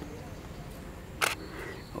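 A DSLR camera's shutter firing once for a single exposure: one short, sharp click about a second and a quarter in.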